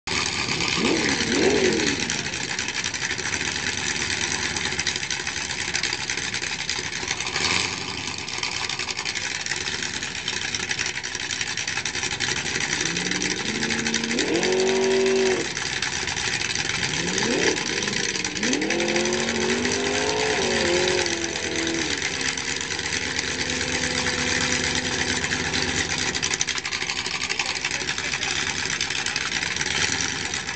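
A 1972 Ford Torino's 466-cubic-inch big-block Ford V8 idling, with a brief rev about a second in and two longer revs around the middle. In each rev the pitch rises, holds and falls back.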